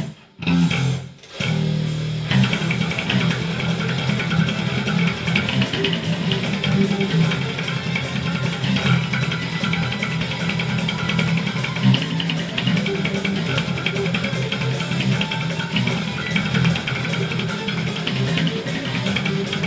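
Electric bass played fingerstyle along with a full death metal band track, with guitars and drums. The music breaks off twice in the first second and a half, then runs on without a pause.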